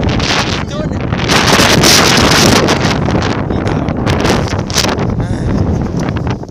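Wind buffeting the phone's microphone: a loud, rumbling rush, strongest from about one to three and a half seconds in.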